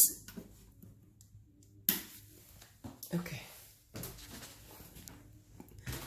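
A few knocks and clicks, the sharpest about two seconds in, as the power switch at the base of a NordicTrack X22i incline trainer is flipped to reboot it. A faint low steady hum sits underneath.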